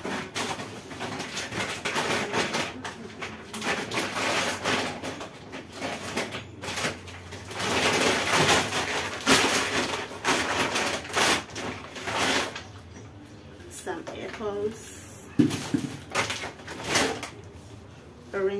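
Plastic shopping bag rustling and crinkling in irregular bouts as groceries are pulled out of it.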